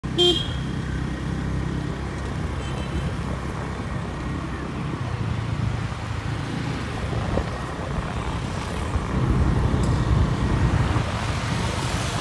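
Road vehicles running on a street: a low, steady engine rumble, with a short horn toot right at the start. The rumble grows louder about nine seconds in, then eases off.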